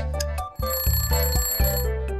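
Background music with a bass line, and an alarm-bell ringing sound effect for the countdown timer running out, starting about half a second in and lasting about a second and a half.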